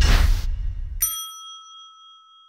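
Logo-animation sound effect: a loud rushing noise with a deep rumble that cuts off about a second in, then a single bright bell-like ding that rings on and slowly fades.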